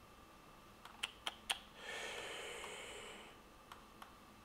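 A few quiet, sharp clicks from working a computer, about four within half a second around a second in, followed by a soft hiss lasting about a second and a half.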